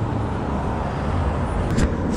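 Steady low rumble of city street traffic, with a brief click near the end.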